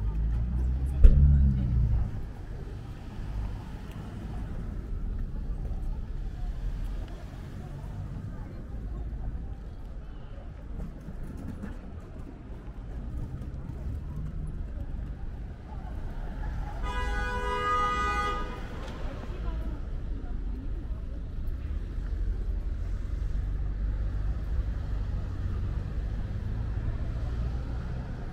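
Busy city street ambience: traffic rumble and pedestrians' voices, with a brief loud low thump about a second in. About two-thirds of the way through, a car horn sounds once, held for about a second and a half.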